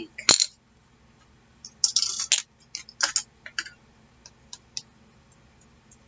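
Small hard plastic clicks and clatters as ink pad cases are handled, opened and set down on a craft table: one sharp click at the start, a quick cluster of clatters about two seconds in, then lighter scattered clicks that die out about five seconds in.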